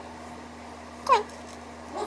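A single short vocal call, falling in pitch, about a second in, over a faint steady low hum.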